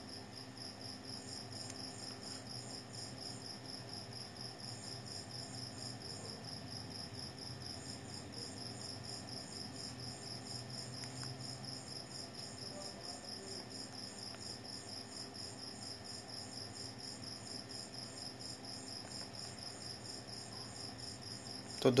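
A faint, steady, high-pitched pulsing trill with a low hum beneath it.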